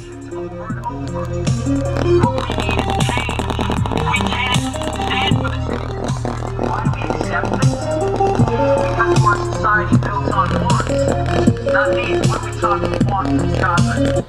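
A song played loud through a small breadboard audio amplifier and loudspeaker, the volume turned up over the first few seconds. Near the end the amplifier begins to add a cracking noise, which the builder thinks comes from the supply rail sagging on its small 100 µF filter capacitors until the amplifier chip cuts out.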